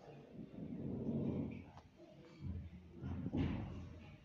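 Hands handling a knitted wool sock and yarn on a paper-covered table: soft rubbing and rustling in two swells, with a small click just before the halfway point.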